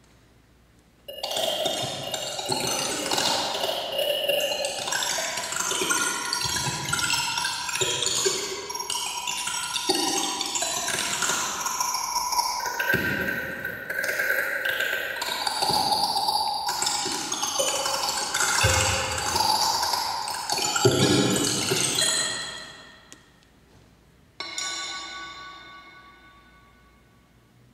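Dense, shifting electronic sound-art music of layered chime-like tones and water-like washes, starting about a second in and fading out near the end. A single ringing ping then sounds and decays.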